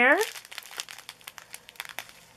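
Small plastic zip-lock bags of diamond-painting drills crinkling and crackling irregularly as they are handled and shuffled through by hand.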